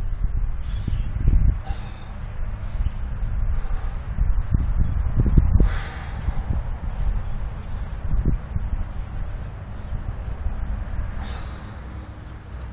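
A man breathing hard and straining with effort while trying to draw a very heavy PVC Turkish bow, in surges about a second in, around five seconds in and near eight seconds, over a steady low hum.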